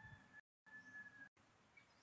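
Near silence: faint outdoor background with a thin, steady high tone, cut by two brief dead-silent gaps.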